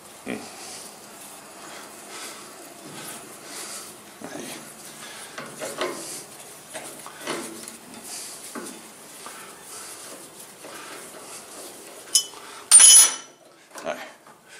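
A hand tap being turned into a metal pulley hub with a homemade 7 mm steel-plate tap wrench, cutting an M8 thread: a run of soft, irregular metallic clicks and scrapes. Near the end comes a loud metal clank with ringing, as the steel wrench is set down on the bench.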